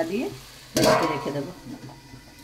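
A spatula stirring in a kadai with a sizzle. About a second in there is one loud metallic clatter that rings and fades as a steel plate is set over the pan as a lid.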